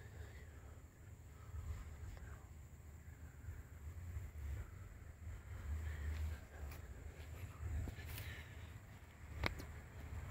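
Faint outdoor background with a low, uneven wind rumble on the microphone, and a single sharp click about nine and a half seconds in.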